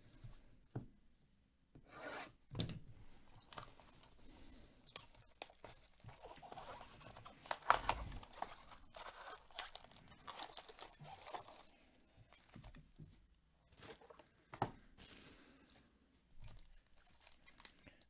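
A sealed baseball card hobby box being torn open by hand: wrapping and cardboard tearing, then packaging and card packs rustling, in irregular crackles with the loudest tear about halfway through.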